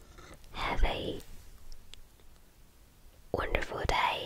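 A woman whispering close to the microphone in two short breathy stretches, one about half a second in and one near the end, with near quiet between.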